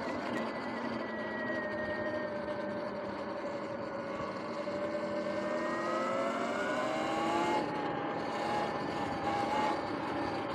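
Sur-Ron X electric dirt bike's motor whining as it is ridden, the pitch sinking slowly as it eases off over the first few seconds, then climbing again as it speeds up, over a steady rush of wind and tyre noise.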